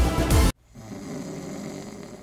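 Loud background music cuts off suddenly about a quarter of the way in, followed by a person snoring.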